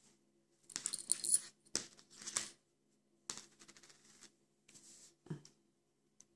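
Metal circular knitting needles clicking and wool rustling in a few short bursts of handling as the last stitch of a knitted cowl is bound off.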